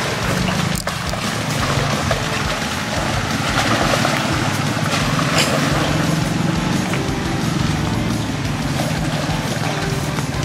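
Jeep Wrangler's engine running steadily at low speed as it crawls through mud, with a patch of tyre-and-mud noise around the middle, mixed with background music.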